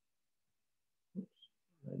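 Near silence, then a brief vocal sound just past a second in and a man starting to speak near the end.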